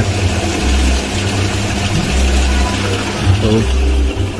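Motor and spin-dryer tub of a Polytron twin-tub washing machine running at speed: a steady low hum that swells and fades about every second and a half. It spins smoothly, without the knocking of an unbalanced load.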